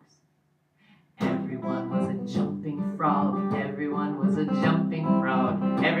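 Acoustic guitar strummed in a steady rhythm of chords, starting suddenly about a second in after near silence.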